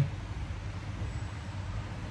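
Low, steady rumble of street traffic, muffled through a glass shopfront.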